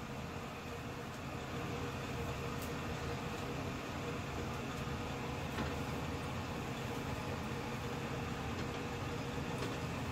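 Electric fan running with a steady hum.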